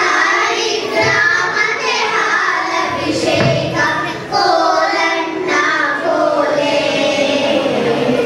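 A group of children singing a song together in chorus, their voices joined on sustained notes.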